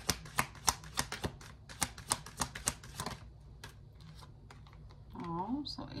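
A deck of tarot cards being shuffled by hand: a quick run of crisp card clicks for about three seconds, then a few scattered taps as the shuffling slows and stops.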